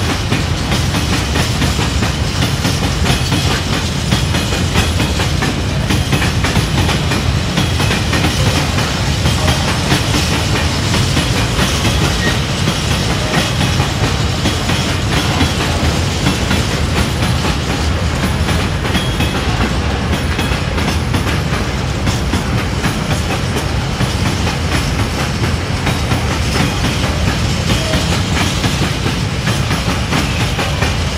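A freight train of Falns four-axle hopper wagons rolling past: a steady, loud rumble of steel wheels on the rails with a rapid clickety-clack.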